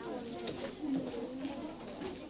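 Low, indistinct talking: voices murmuring with no clear words.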